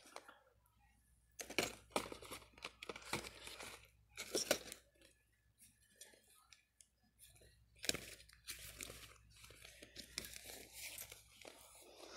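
Plastic-packaged merchandise crinkling and towels being shuffled by hand on a wire store shelf, in irregular bursts of rustling.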